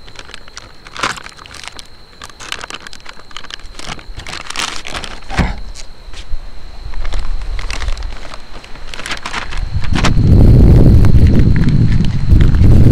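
Plastic, paper and foil MRE packaging crinkling and rustling in irregular crackles as the hot main-course pouch is pulled from its heater bag and cardboard sleeve. A loud low rumble takes over near the end.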